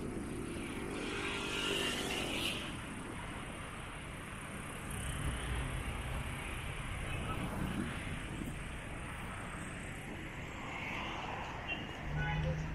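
Steady street traffic: cars passing on the road beside the footpath, a continuous rumble of engines and tyres that swells slightly for a moment about two seconds in.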